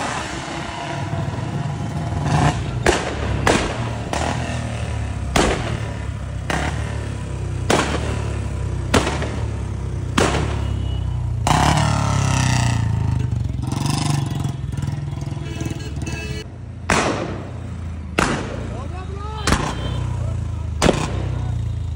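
Royal Enfield Bullet single-cylinder motorcycle running with a loud modified exhaust. Its low engine rumble is broken by sharp gunshot-like exhaust bangs about once a second, deliberate backfire pops of the kind riders call 'patakas' (firecrackers).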